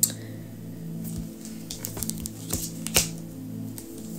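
Tarot cards being handled and set down on a table: a few light clicks and taps, the sharpest near the start and about three seconds in, over low, steady background music.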